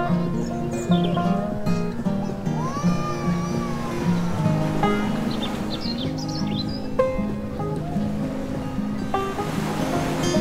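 Instrumental background music with a steady rhythm of repeated low notes and lighter notes above.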